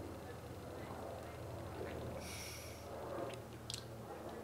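A person sipping beer from a glass and tasting it: a short hiss of air about two seconds in, then a few faint mouth and lip clicks near the end, over a low steady hum.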